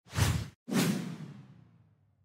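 Two whoosh sound effects in quick succession: a short one, then a second that trails off over about a second.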